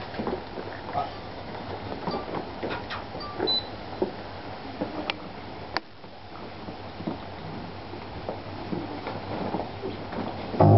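Quiet room tone of a small hall with a seated audience waiting in near hush: faint rustles and stray murmurs, with a few sharp small clicks about five to six seconds in.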